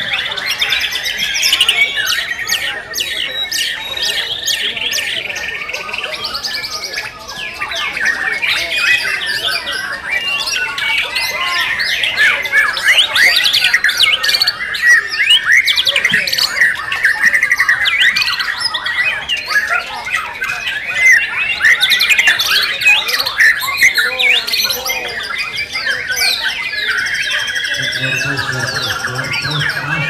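White-rumped shama (murai batu) singing in a dense, unbroken run of rapid whistles, trills and chattering notes.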